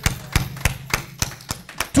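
Handclaps of a clap offering: a few sharp, separate claps at an uneven pace of about three a second, over a faint steady low hum.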